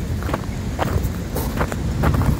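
Footsteps of people walking, a few irregular steps, over a steady low rumble on the microphone.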